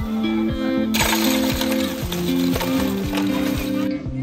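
Background music with a steady beat. From about a second in, ice cubes pour from a bag and rattle into a metal tub of bottles for nearly three seconds, then stop suddenly.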